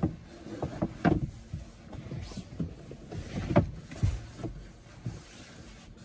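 A fabric magnetic sunshade panel for a Tesla glass roof being slid up by hand into place: irregular rubs, scrapes and light knocks of the panel against the roof, the sharpest right at the start and about a second in.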